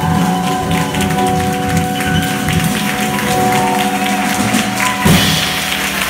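Live jazz band of piano, bass, drums and guitar playing the closing bars instrumentally, with held notes under repeated drum and cymbal hits. A louder hit comes about five seconds in.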